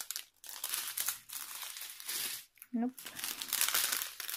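Small clear plastic bags of diamond painting drills crinkling as they are picked up and shuffled through by hand, in stretches broken by short pauses.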